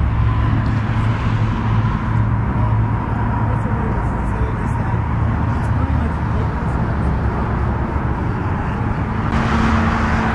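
Steady noise of freeway traffic, a continuous low rumble of passing vehicles, swelling a little near the end.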